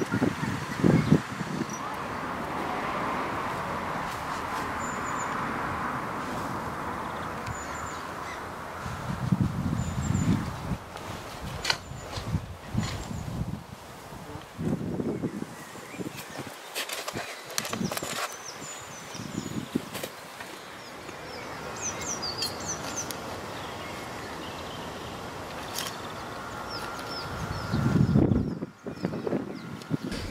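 Small birds chirping now and then over steady outdoor background noise, with a few low rumbles and some sharp clicks.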